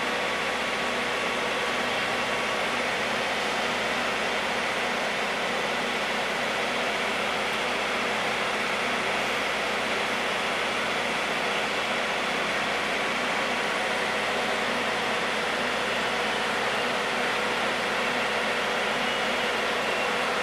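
Diesel locomotive's engine running steadily as the locomotive moves slowly along a station track: a constant, even hum with steady tones throughout.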